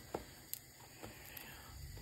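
Faint clicks of a plastic spatula against a nonstick frying pan, twice in the first second, as it slides under slices of French toast, over low background noise.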